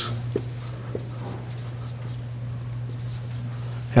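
Dry-erase marker writing on a whiteboard: faint strokes and a couple of light taps, over a steady low hum.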